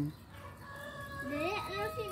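A faint, drawn-out call begins about halfway through, rising and then holding steady on one pitch for over a second.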